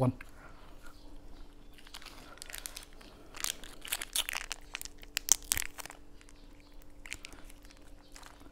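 Fresh green vegetable being snapped and torn by hand, a run of short crisp crackles from about two to six seconds in.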